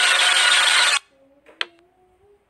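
A loud, dense, buzzing cartoon soundtrack noise with tones running through it, which cuts off suddenly about a second in. A single sharp click follows about half a second later.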